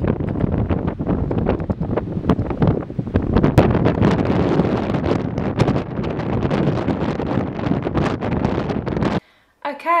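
Strong gusty wind buffeting the microphone over the rush of surf breaking on the shore, loud and rough, cutting off suddenly about a second before the end.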